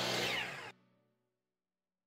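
DeWalt miter saw running as it cuts a small wooden patch piece, with a falling whine in its sound, cut off abruptly less than a second in, then silence.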